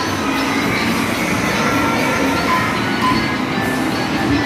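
Busy indoor arcade din: electronic music and short jingle tones from coin-operated kiddie rides and game machines over a steady rumbling clatter.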